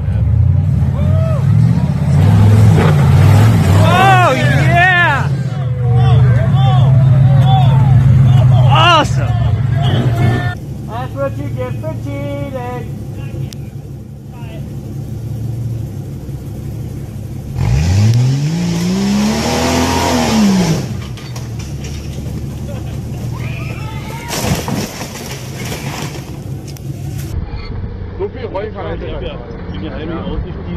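Off-road 4x4 engines revving hard under load across several short clips, with people's voices shouting over the first one. About two-thirds of the way through, one engine revs up and back down in a long rise and fall of pitch.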